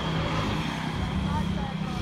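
Outdoor market ambience: background chatter of distant voices over a low rumble of traffic, with a faint steady high-pitched tone running throughout.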